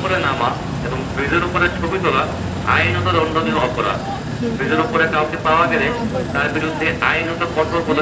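Voices talking inside a bus, over the low, steady hum of the bus's engine as it moves slowly.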